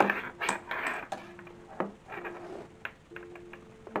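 Cotton cloth and thin cord rustling as the lacing is pulled through a doll-sized corset, most of it in the first second, then a few light, sharp taps.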